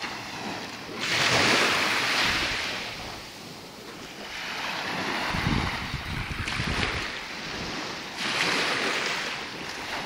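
Small waves washing onto the shore, the surf swelling loudly about a second in and again near the end, with wind rumbling on the microphone in between.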